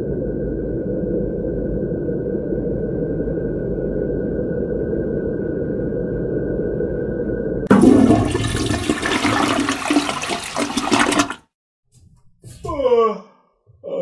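Intro sound design: a dark, steady low rumbling drone with a thin high tone held above it, cut off about eight seconds in by a sudden loud rushing, flushing noise that lasts about three and a half seconds. After a brief gap come a couple of short falling pitch glides.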